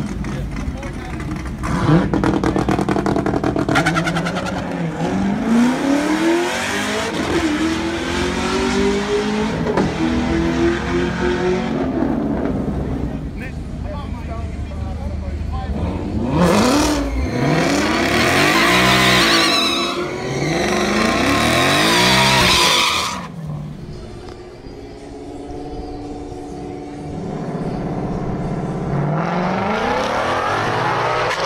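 2018 Ford Mustang GT's 5.0-litre V8 revving in repeated rising and falling sweeps during a drag-strip burnout, with tyre spin noise loudest in the middle stretch that cuts off sharply about two-thirds of the way in. It then settles to a steady, lower engine note.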